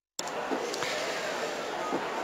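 Dead silence that gives way abruptly, a fraction of a second in, to a steady background murmur and hiss of ambient noise from an open announcer's microphone.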